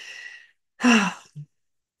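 A woman draws a breath and then lets out a short voiced sigh that falls in pitch; she is choked up with emotion.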